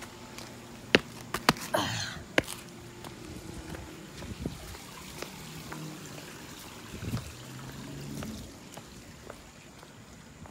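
Water trickling steadily from a backyard koi-pond waterfall, with a few sharp knocks and footsteps on brick pavers between about one and two and a half seconds in.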